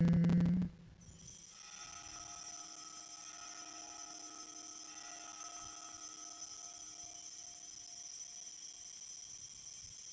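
A chanted line with music ends in the first second. Then a steady, high, shimmering ringing of consecration bells sounds through the elevation of the chalice at Mass, its lower notes dying away about seven seconds in.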